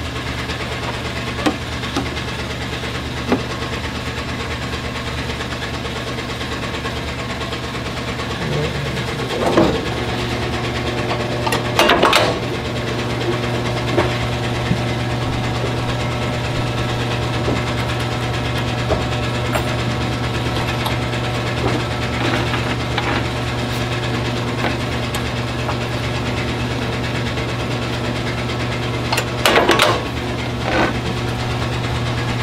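Steady low hum of running workshop machinery, broken by a few sharp clunks and handling knocks at a grommet press as grommets are set into a floor mat; the loudest come about ten and twelve seconds in and just before the end.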